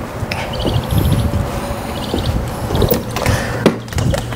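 Footsteps and handling with a low rumble of wind on the microphone, two short runs of rapid high chirping, then a glass patio door being opened and shut with a sharp clack near the end.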